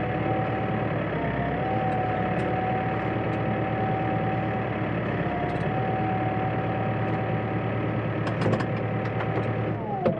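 Case tractor's diesel engine idling steadily, heard from inside the cab, with a steady whine over the drone. A few sharp clicks come about eight and a half seconds in.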